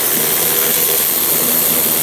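Power ratchet with a 10 mm socket running steadily, backing out a bolt: an even, loud hiss-and-whir with a low hum under it.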